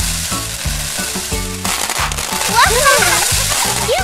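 Animated sound effect of a mass of plastic balls pouring and spilling, a dense steady hiss, over children's background music with a steady beat. From about halfway in come swooping, wordless cartoon-voice whoops that rise and fall in pitch.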